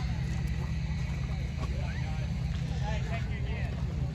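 Indistinct background voices of people talking in the pits, over a steady low rumble.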